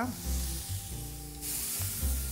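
Chopped onion and garlic sizzling in olive oil in a frying pan, a light hiss that returns about one and a half seconds in, under background music with held tones.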